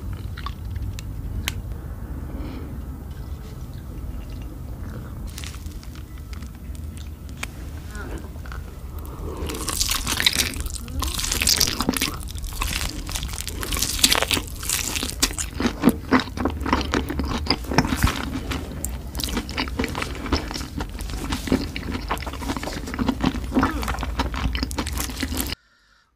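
Close-miked slurping and chewing of instant noodles, with scattered sharp clicks, quiet at first and much louder and busier from about ten seconds in, over a steady low hum.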